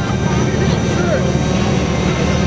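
A steady low engine rumble with a fine rapid pulse, under faint chatter from a gathered crowd.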